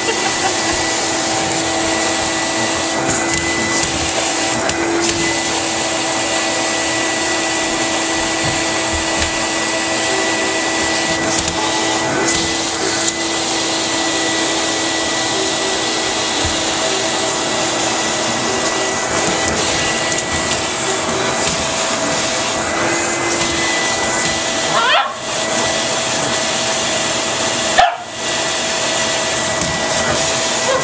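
Vacuum cleaner running steadily through its hose, a constant rushing suction with a steady motor whine. The sound briefly dips twice near the end.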